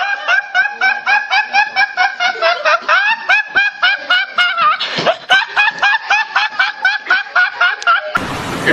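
A teenage boy laughing uncontrollably in a long run of short, high-pitched squeals, about four a second, broken by a noisy gasp for breath about five seconds in.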